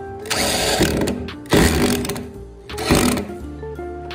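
Corded electric drill with a screwdriver bit driving wood screws through a metal door stopper into a wooden door, run in three short bursts, the middle one longest, to take it slowly and keep the screw straight. Background music plays underneath.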